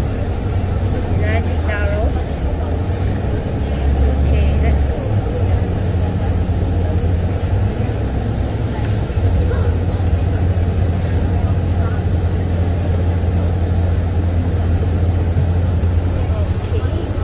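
City bus running, heard from inside the cabin near the front. A steady low engine drone mixes with road and cabin noise as the bus moves, and it swells briefly about four seconds in.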